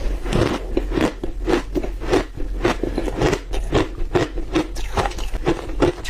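Refrozen matcha shaved ice being bitten and chewed: a quick, continuous run of crisp crunches, several a second.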